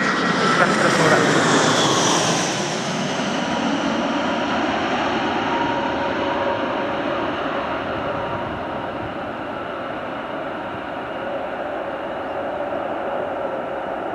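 Jet engines of an Airbus A380 at taxi power: a steady whine over a broad rush, shifting in pitch during the first couple of seconds as the four-engined airliner taxis and turns.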